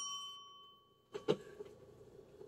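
Desk service bell ringing out after a single tap, its bright multi-tone ring dying away within about half a second. A couple of faint short sounds follow about a second later.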